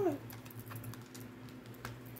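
Tarot cards being handled and laid down on the spread: a few light clicks and taps over a faint steady hum.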